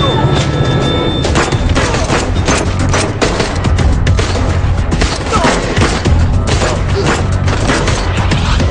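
Repeated handgun shots and impacts from a film shootout, over a loud, continuous action-film score.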